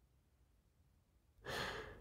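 Near silence, then about one and a half seconds in a man's short, soft intake of breath before speaking.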